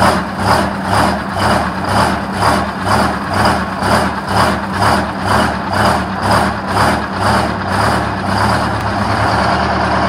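GM PD-4501 Scenicruiser bus's diesel engine running in the open rear engine bay, its sound rising and falling about twice a second, then settling into a steady idle near the end. It is running again after five years sitting unused.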